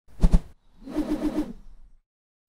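Short transition sound effect for an animated logo: two quick hits near the start, then a brief pulsing tone that stops about a second and a half in.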